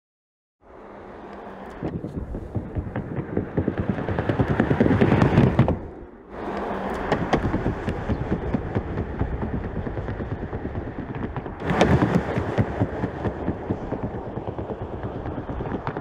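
Porsche Panamera driving on a test track: steady tyre and road noise shot through with rapid clatter and knocks. It starts suddenly half a second in, builds to about five seconds, drops away briefly at six, and swells again at about twelve seconds.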